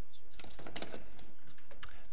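Faint handling noise at a table microphone: a run of soft clicks and rustles, with a sharper click near the end.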